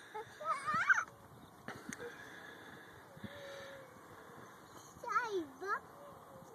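A toddler's short wordless vocal sounds, high and sliding in pitch: one brief call near the start and another about five seconds in, with a couple of faint clicks in between.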